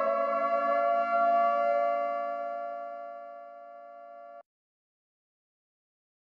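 Synthesized 'loading' sound effect: a chord of pure electronic tones that has glided up in pitch and now holds steady, fading over about three seconds and cutting off suddenly a little over four seconds in.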